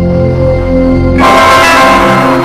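Logo jingle audio layered in many copies at once, some pitch-shifted, holding several low sustained tones. A little past halfway a loud, bright bell-like chime with many notes at once comes in and starts to fade.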